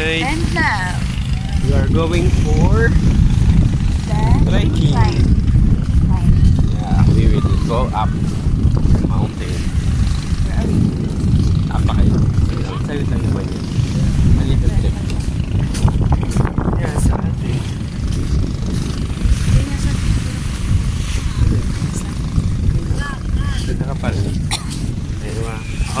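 Wind buffeting a phone's microphone on an open beach: a loud, rough, low rumble throughout, with voices talking faintly now and then.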